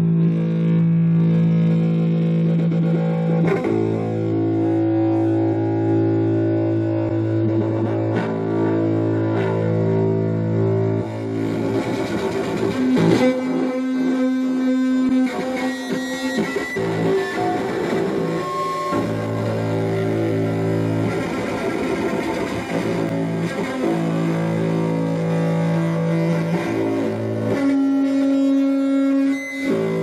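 Live music from electric bass guitars run through effects, with synthesizer: slow, long-held droning notes that shift to new pitches every few seconds.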